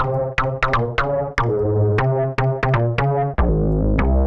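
Softube Monoment Bass sampler-based bass synth playing a looping programmed bass line of short notes with sharp attacks. About three and a half seconds in, the tone changes and becomes much heavier in the low end as a different Source B sample is switched in.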